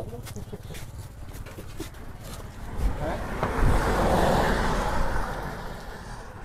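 A passing road vehicle: its noise swells about three seconds in, is loudest for a second or two, then fades near the end.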